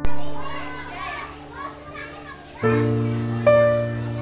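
Many children's voices chattering and calling out together, with piano music playing over them; piano chords strike about two and a half seconds in and again a second later.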